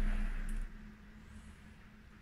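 A steady low electrical hum that cuts off abruptly under a second in, leaving faint room tone.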